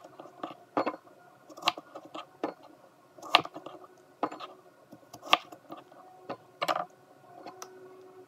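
Chef's knife slicing a hard persimmon and knocking down onto a wooden cutting board: about eight sharp knocks, roughly one a second.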